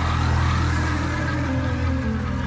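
Electric bass guitar playing long, low sustained notes over a recorded backing track, moving to a new note near the end.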